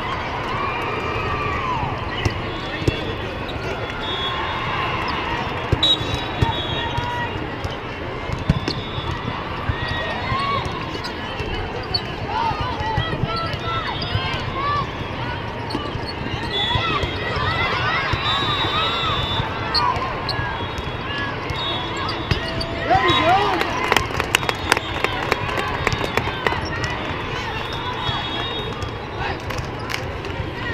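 Indoor volleyball play in a large arena: a steady hubbub of players' and spectators' voices, with sneakers squeaking on the court and sharp hits of the ball scattered through it.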